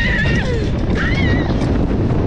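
Two short, high, wavering screams from giant-swing riders as the swing falls, one at the start and one about a second in, over a loud low rush of wind on the microphone.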